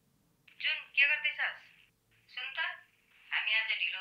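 A woman's voice on the other end of a phone call, heard thin and narrow through the telephone line, speaking in short phrases from about half a second in.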